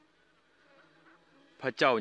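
A faint steady hum in a gap between speech. About one and a half seconds in, a man starts speaking loudly.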